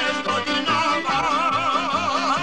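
Bosnian izvorna folk music recording playing over a steady beat. About a second in, a melody line with a wide, fast vibrato comes in.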